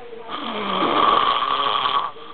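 A man snoring loudly through his open mouth: one long snore that begins about a third of a second in, swells, and cuts off sharply near the end.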